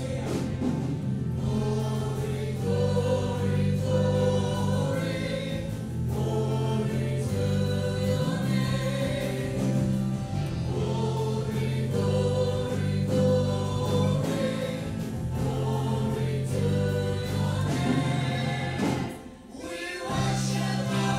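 Live worship band playing and singing: several voices in a gospel-style song over guitars and held low notes that change every couple of seconds. The music dips briefly just before the end.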